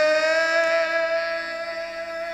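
A violin holding one long bowed note, steady in pitch and slowly fading.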